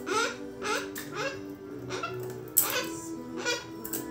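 White cockatoo babbling in a string of short rising calls, about two a second, over background music.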